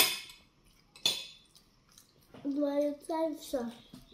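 Tableware clinking at a meal table: two sharp clinks about a second apart, each with a short ring, followed by a child talking softly.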